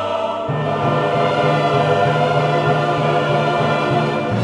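Choral music: a choir singing long held chords, the harmony shifting to a new chord about half a second in.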